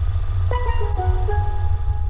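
Hip-hop intro music: a steady heavy bass line, joined about half a second in by a melody of a few held high notes.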